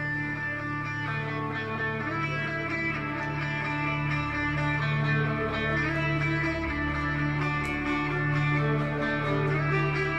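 Live instrumental music: electric guitar playing sustained, ringing notes over a steady low drone, growing slightly louder.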